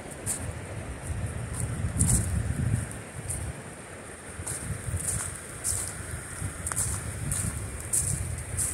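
Wind buffeting the phone's microphone in uneven gusts, with crisp rustles about every second, over a steady rush of water from river rapids.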